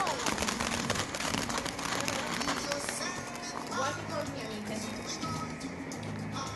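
Ground fountain firework spraying sparks with a dense crackling hiss that dies away about halfway through. After it come voices and a low steady hum.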